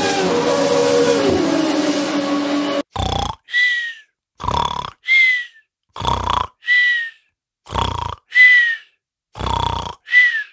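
Snore-and-whistle sound, the 'mimimi' sleeping-cat kind, beginning about three seconds in: a rasping snore in, then a short falling whistle out. It repeats about every second and a half, five snores in all, with dead silence between. Before it, a steady, different sound cuts off abruptly.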